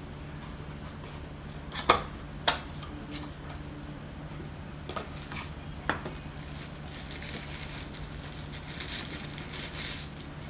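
Handling of a small cardboard box and its packaging: a few light clicks and taps as the box is opened, then a rustle near the end as a thin foam wrapping is pulled off a drone landing gear.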